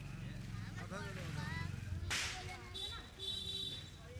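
People talking at a busy firecracker stall, with one sharp crack about two seconds in, the loudest sound, fading quickly; a high thin whistling tone follows near the end.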